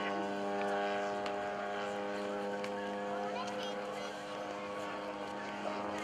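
Steady drone of a large radio-controlled model plane's Desert Aircraft DA-100 two-stroke gasoline engine in flight, holding an even pitch with a slight wavering tone in the middle.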